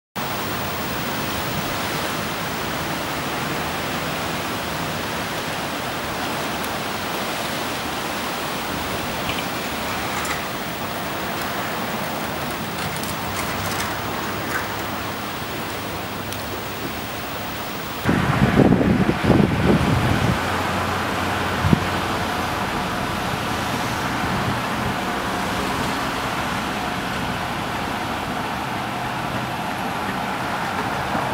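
Steady rush of water flowing under a riveted steel bridge. A little past the middle comes a loud low rumble lasting about two seconds, followed by a steadier low hum.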